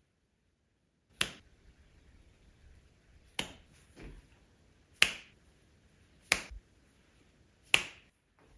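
Five sharp finger snaps, one every one to two seconds.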